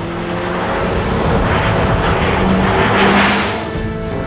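McLaren MP4-12C GT3 race car with a twin-turbo V8 passing at speed, its sound swelling to a peak about three seconds in and then falling away.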